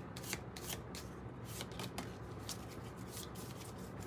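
A stack of round oracle cards being shuffled and handled by hand: soft, scattered card clicks and rustles.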